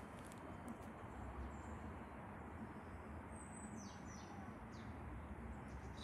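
Faint outdoor background rumble with a few short, high, downward-sweeping bird chirps a little past the middle.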